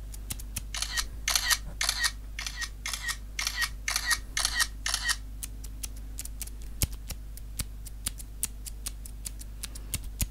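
Close-miked ASMR trigger sounds: a run of about nine short scratchy strokes, about two a second, then scattered light clicks and taps after about five seconds.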